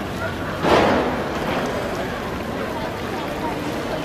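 Outdoor city-square ambience: a steady background of traffic and indistinct voices of passers-by. About a second in, a brief loud rushing burst stands out over it.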